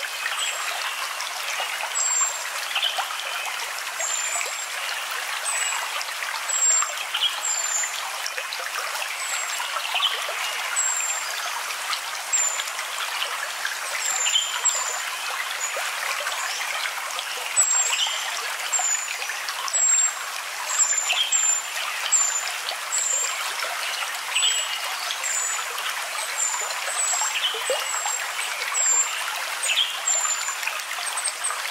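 Steady trickling and running of a small stream, with short, high chirps repeating every second or so, thickest past the middle.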